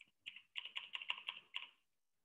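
Computer keyboard keystrokes: a quick run of soft key clicks as text is deleted from a line of code.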